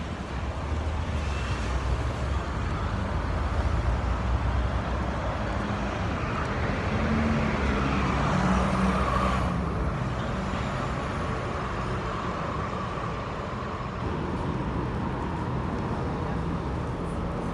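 Nova Bus articulated city bus passing close by with its engine running, over steady street traffic; the engine sound swells to its loudest about eight to nine seconds in.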